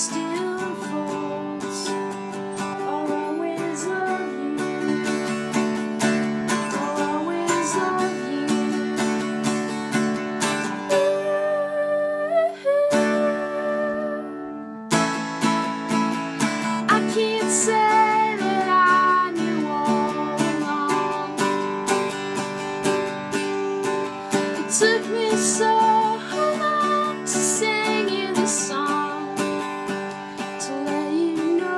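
Instrumental break on an acoustic mandolin, picked and strummed in a steady rhythm, with the picking easing off to let a chord ring briefly about halfway through.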